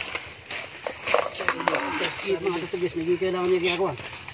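A person's voice holding one long, drawn-out tone for about two seconds in the second half, after a few short knocks and rustles.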